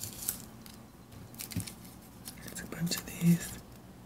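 Rustling of paper embellishment pieces being handled, with soft whispered muttering. The loudest moment is a brief low voiced sound near the end.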